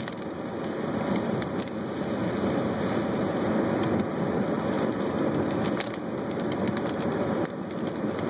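Steady road noise heard inside a moving car: tyres rushing on a rain-soaked road, with scattered light ticks, likely rain striking the windshield.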